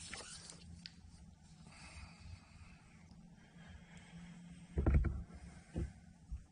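Fly line swishing through the air on a cast at the start, then two dull thumps near the end, the first about five seconds in the loudest.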